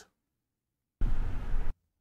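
Recorded in-car driving noise, a rumbly mix of road and wind noise, played back from an action-camera clip. It cuts in abruptly about a second in and cuts off again after under a second.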